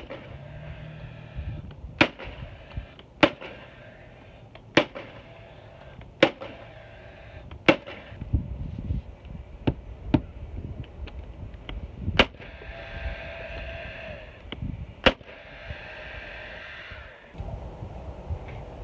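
Paslode cordless trim nailer firing nails into new bay-window trim boards: about ten sharp shots, spaced irregularly a second or two apart, ending about 15 seconds in.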